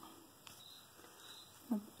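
Quiet room tone with a faint click about half a second in and a brief bit of a woman's voice near the end.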